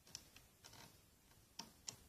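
Faint, irregular light clicks of a loom hook and rubber bands against the plastic pins of a Rainbow Loom as bands are looped over, about five small clicks in two seconds.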